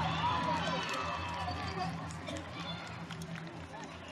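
Outdoor crowd voices: many people chattering and calling out at once over a steady low hum, a little louder at the start and easing off slightly.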